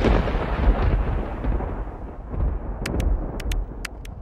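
A deep, loud rumble that slowly dies away, with several sharp clicks near the end.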